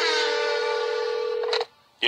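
A single steady electronic telephone tone, held for about a second and a half and then cut off abruptly.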